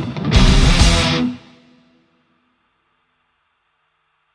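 Heavy metal band with electric guitar and drums playing the final bars of a song: a brief break just after the start, a last burst that stops abruptly about a second in, then a held note ringing out and fading away.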